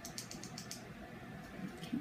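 Faint rapid clicking, six or seven small taps in under a second, from a makeup brush picking up eyeshadow from a small pan.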